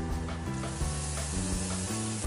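Garlic and onion sizzling in butter in a stainless steel pan, with background music playing over it.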